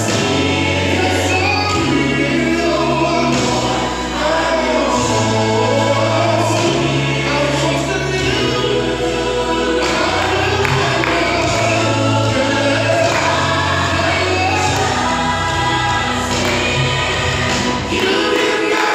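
Gospel choir music: a choir singing over a sustained bass line whose notes change every second or two, playing loud and without a break.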